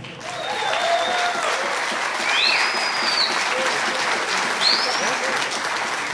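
Audience applauding steadily, with a few short high whistles over the clapping.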